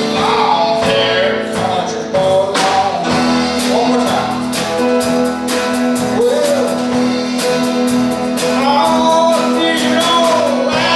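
Country band playing live, led by a lap steel guitar played with a slide bar, its notes gliding up and down over acoustic guitar.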